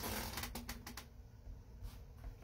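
Oracle cards being handled: a short rustle, then a quick run of light clicks and snaps about half a second to a second in, with one more near the end, as the next card is drawn from the deck.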